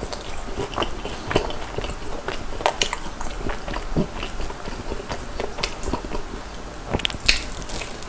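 Close-miked chewing of a crumb-coated corn dog topped with cheese sauce: irregular wet, crunchy mouth sounds, with louder crunching near the end as a fresh bite is taken.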